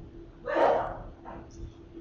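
A single short breath, an exhale close to the microphone, about half a second in, with a weaker one after it, over a faint steady hum.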